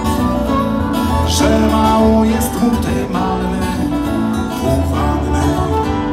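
A live sea-shanty band plays with acoustic guitars, fiddle and bass guitar in a steady, unbroken passage.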